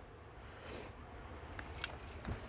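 Quiet handling of climbing gear with a single sharp click near the end: a carabiner being clipped onto the extended sling of a cam placed in a rock crack, to lengthen it with a quickdraw.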